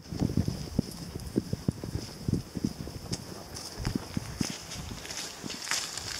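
Footsteps on a dirt trail covered in fallen leaves: irregular low thuds of walking, with occasional crunchy, crackling rustles.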